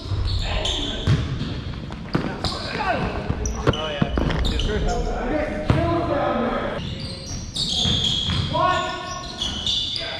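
Basketball bouncing on a hardwood gym floor, with several sharp knocks, amid players' voices calling out, all echoing in a large gymnasium.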